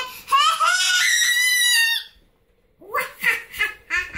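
A child's high-pitched scream, rising and then held for nearly two seconds. After a short pause come quick bursts of laughing and chatter.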